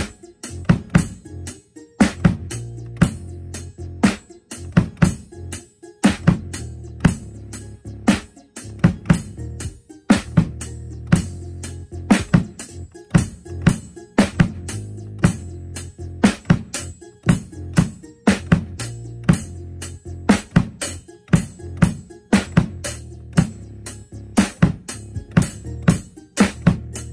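Acoustic drum kit played with wooden sticks: a steady beat of snare, bass drum and Zildjian ZBT cymbal hits. The beat is played along with a backing track whose low bass notes hold steady underneath and change every couple of seconds.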